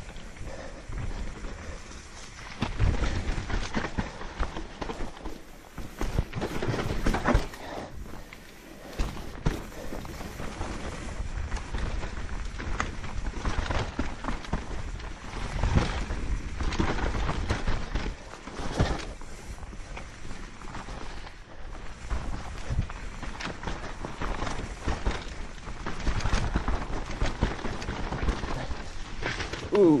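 Mountain bike riding down a dirt and root forest trail: tyres rolling and skidding over the ground while the bike rattles and clunks with frequent irregular knocks over a low rumble.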